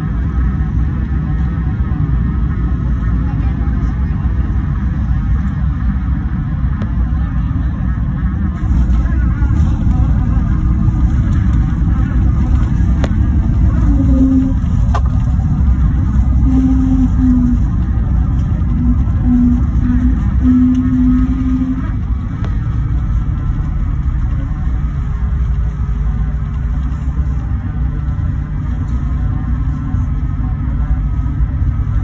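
Cabin noise of an airBaltic Airbus A220 landing and rolling out: a steady low rumble of its geared turbofan engines, airflow and wheels, growing louder with added hiss from about nine seconds in and easing after about twenty-two seconds as the jet slows on the runway. A few short low tones sound midway.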